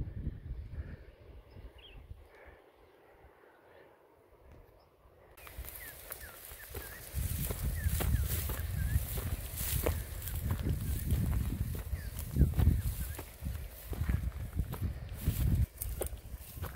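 Footsteps crunching through dry grass with a low wind rumble on the microphone, starting abruptly about five seconds in. Before that, a quiet hillside with a few faint high chirps.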